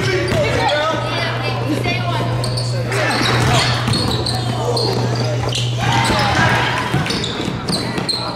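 Basketball bouncing on a hardwood gym floor as a player dribbles, with voices in the hall.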